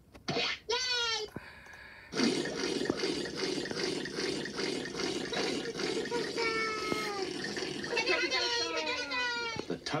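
Tubby Custard machine sound effect from a children's TV show, played through computer speakers: a steady low pouring, filling sound starts about two seconds in as custard runs into a bowl. High sliding character voices sound over it near the start and again in the second half.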